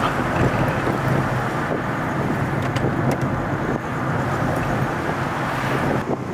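Steady cabin noise of a taxi being driven, the road and engine sound heard from the back seat, with a low, even hum underneath.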